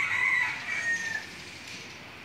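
A rooster crowing once: a drawn-out call that drops slightly in pitch and fades out a little over a second in.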